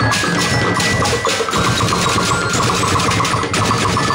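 A drumblek street percussion band playing a fast, steady beat on plastic barrels, tin drums and bamboo, with quick high pitched melodic notes over the drumming.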